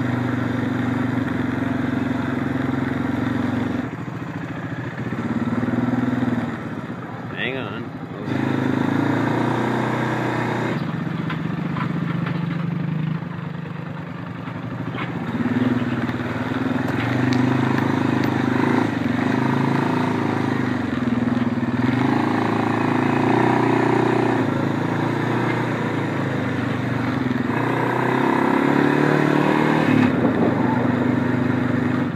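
ATV engine running under way, its pitch stepping up and down as the throttle and speed change, with a couple of easier, quieter stretches.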